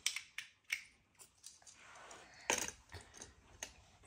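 Small plastic Lego pieces clicking and knocking as a little Lego car is handled in the hands, about five sharp clicks spread over a few seconds.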